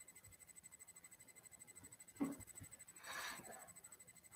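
Near silence with a faint steady high whine, broken by a soft knock about two seconds in and a short rustle just after three seconds, from a hand moving over paper on a desk.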